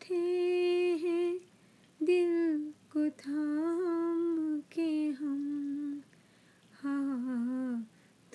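A single unaccompanied voice sings long wordless held notes in a ghazal melody, in about five phrases of one to two seconds each with short pauses between them. The pitch stays nearly level, wavering slightly within each note.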